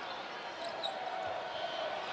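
Steady arena crowd noise with a basketball being dribbled on the hardwood court.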